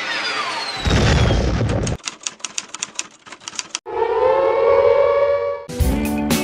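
Logo-sting sound effects: falling swept tones, a deep low hit about a second in, a fast run of ticks, then a steady held tone. Music starts just before the end.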